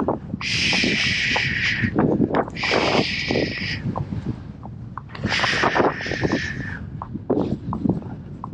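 A rider shushing a horse three times, each a long soothing "shh" of about a second or more, to calm it after a spook. Under it the horse's hooves clop unevenly at a walk on a paved lane.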